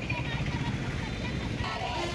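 A group of women chanting protest slogans over a steady low rumble of passing traffic. The voices drop out briefly and come back in near the end.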